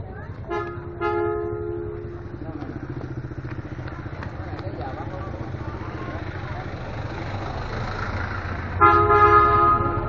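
Motorbike horn honking in street traffic: a short beep, a longer toot about a second in, and a louder long honk near the end, over a steady low engine rumble.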